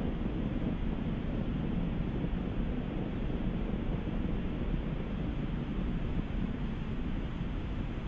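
Steady low rumble of a Soyuz rocket's first stage in flight, its four strap-on boosters and core engine burning liquid fuel, even and unbroken.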